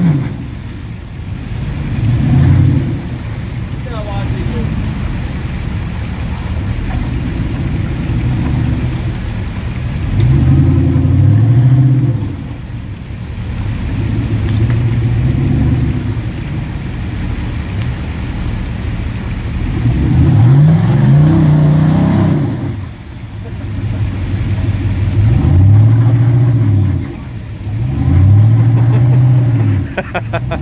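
Off-road Jeep's engine working under load as it crawls up a rock ledge out of a water hole, revving up and back down in repeated bursts, about five times, between stretches of lower steady running.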